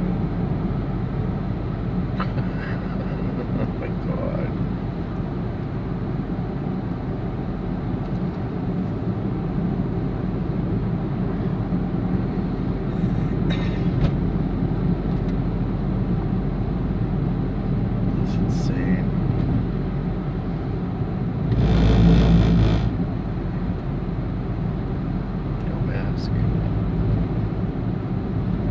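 Car cabin road noise while driving at speed: a steady low rumble of engine and tyres. About three-quarters of the way through comes a louder rush of noise lasting about a second and a half.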